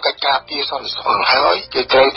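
Speech only: one voice talking in Khmer without a break.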